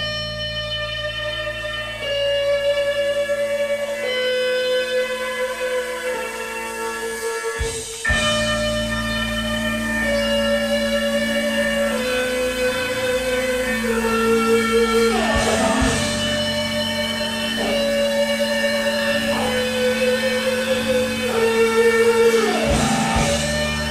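Live rock band playing a slow instrumental: electric guitar lead holds long sustained notes that step downward in pitch, phrase after phrase, over a steady keyboard and bass chord. The band comes in abruptly at full level, and a guitar note bends down near the middle.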